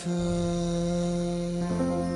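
A Thai pop ballad's closing line: a singer holds one long, steady note on the last word "เธอ" ("you") over soft, sustained backing. A new note joins in the accompaniment near the end.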